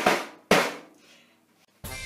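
Homemade kitchen percussion played in two short noisy bursts: one fading out just after the start, and a second sharp one about half a second in that dies away within half a second. Recorded music starts near the end.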